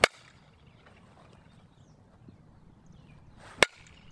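A softball bat striking a softball twice, about three and a half seconds apart: two sharp cracks.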